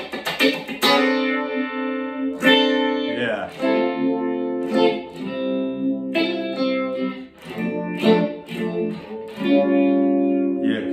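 Electric guitar played through a BigNoise Phase Four analog phaser pedal with its sweep turned fully clockwise for a deeper phase. Quick choppy strums come in the first second, then ringing chords struck every second or so, the phasing sweeping through them.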